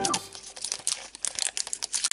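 Thin printed wrapper crinkling as it is peeled off a plastic surprise egg: a run of quick, irregular crackles.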